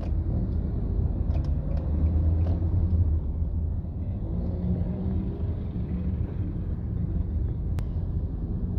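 Steady low rumble of a car's engine and tyres heard from inside the moving vehicle in city traffic, swelling a little a couple of seconds in. There is one sharp click near the end.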